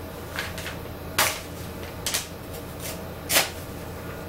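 Three sharp knocks, the last the loudest, a second or so apart, over a steady low room hum.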